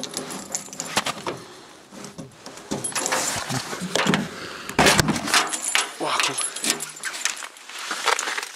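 Hand pulling repeatedly at a car door handle that is frozen shut: irregular plastic clicks, knocks and rattles as the iced-up door fails to open.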